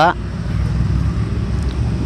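Steady low engine rumble with a faint hiss over it, running on without a break.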